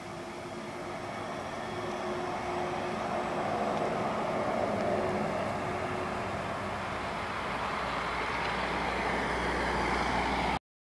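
VDL Citea SLE-129 Electric battery bus driving past at close range: tyre and road noise with a faint steady hum, loudest about five seconds in as it goes by. The noise swells again with a low rumble near the end.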